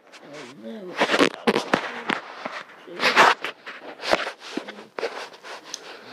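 Close rustling and handling noise against the microphone: a run of sharp crackles and knocks, with a brief wavering vocal sound about half a second in.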